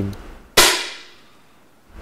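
A single shot from a match air rifle: one sharp crack about half a second in, its echo in the indoor range dying away over a little more than a second.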